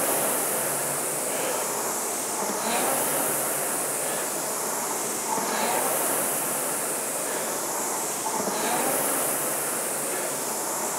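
Concept2 indoor rower's air-resistance flywheel fan whirring with a rushing-air sound that swells with each drive stroke, about once every three seconds at a steady 20 strokes per minute.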